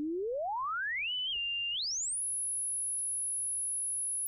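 Serum software synth sine oscillator swept upward with coarse pitch: a pure tone glides from around middle C up to about 3 kHz, wavers and pauses there, then climbs again to a very high whistle and holds. The oscillator is running in 1x draft mode without oversampling, so faint aliased tones sit beneath the fundamental.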